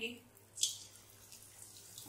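Drops of gram-flour (besan) batter falling through a perforated ladle into hot oil and sizzling as boondi fry. A sharper burst of sizzle about half a second in, then a faint steady sizzle.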